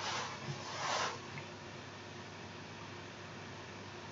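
Two brief rustling swishes in the first second as hands and padded sleeves move while handling a plastic-and-rubber sealing ring, then only a faint steady hiss.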